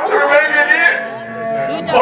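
A man singing a long, wailing note with a strong wavering vibrato in the high-pitched declamatory style of nautanki, amplified through a stage PA. A steadier held accompanying tone sounds under the voice in the second half.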